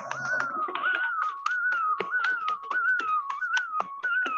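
A continuous whistle-like tone that wavers up and down in pitch, with many sharp clicks scattered through it.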